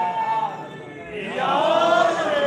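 A man's voice chanting a line of Urdu verse in a drawn-out melodic style, holding long notes: one held at the start, then after a brief dip another that rises and slowly falls.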